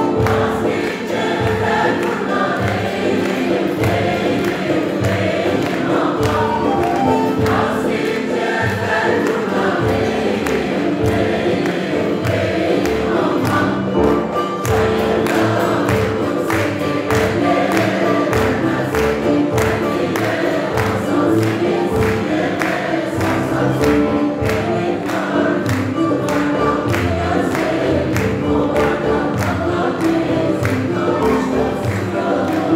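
A mixed choir singing a Turkish folk song (türkü), accompanied by a folk ensemble of bağlama, keyboard and percussion, with a steady beat.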